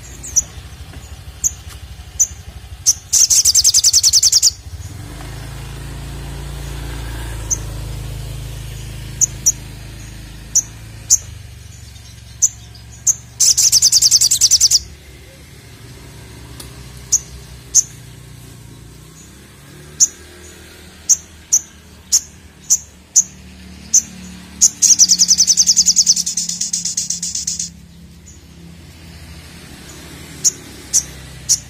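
Olive-backed sunbird (sogon) calling: sharp, single high chirps spaced out, broken three times by a loud, rapid rattling trill lasting one and a half to three seconds.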